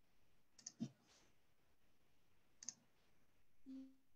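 Near silence with a few faint clicks: a quick pair a little under a second in and another near three seconds. A faint short low tone follows near the end.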